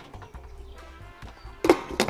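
Quiet background music, then near the end a glass lid is set onto a metal cooking pot of drained spaghetti with a couple of sharp knocks.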